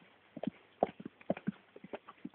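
Walking steps on a hard surface: a run of short, sharp, irregular clacks, about three or four a second.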